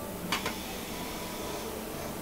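A piston set down on the metal pan of a digital scale: one short clink about a third of a second in, over a steady low workshop hum.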